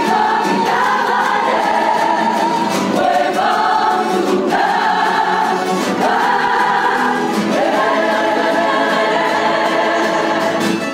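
Carnival coro singing in chorus, a full mixed choir led by women's voices, with plucked guitars and lutes accompanying. The voices hold long notes that move step by step every second or two.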